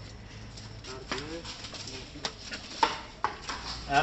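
A few sharp, separate taps and knocks of a wooden stick probing a doorway and room floor while searching for a snake, with a short voice-like call about a second in.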